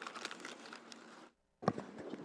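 Faint rustling of paper being handled at a table microphone, with a single short knock a little past halfway.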